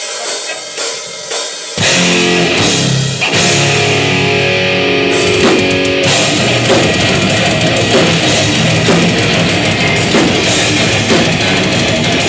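Live death/thrash metal band starting a song: a few clicks count it in, then about two seconds in the full band comes in loud, with a pounding drum kit and distorted electric guitars.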